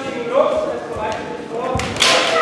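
Kendo fighters' kiai shouts, drawn-out voiced calls, then a sharp impact near the end as an attack begins.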